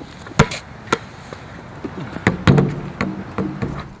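Basketball dribbled on a hard outdoor court: a few sharp bounces in the first second. About halfway through, a low pitched sound of held tones comes in.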